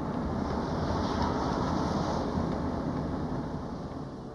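A Volkswagen van driving on asphalt: steady engine and tyre noise, fading slightly near the end.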